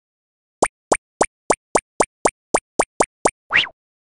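Cartoon pop sound effects: eleven quick rising plops at about four a second, then one longer rising glide just before the end.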